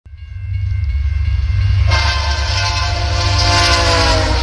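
Locomotive air horn sounding one long chord over the low rumble of a train. The horn is a fainter steady tone at first and becomes much louder about two seconds in.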